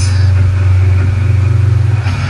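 Loud, steady low rumble of a film trailer's soundtrack, played from a screen's speakers and picked up by a phone.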